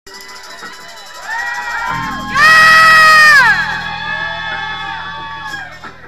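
Club audience cheering and whooping, with several voices rising and falling, then one very loud whoop about two and a half seconds in that is held for about a second and slides down in pitch.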